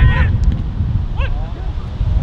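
Wind buffeting the microphone, with two short shouts from players on the pitch: one at the start and one just past a second in.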